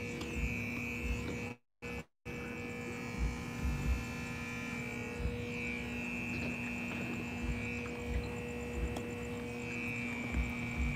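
A steady electrical hum holding two low tones, with soft, faint thumps every second or two. The sound cuts out completely twice, briefly, about two seconds in.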